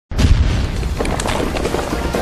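A sudden loud boom, then the clatter of falling rock rubble: a sound effect of a stone wall bursting apart.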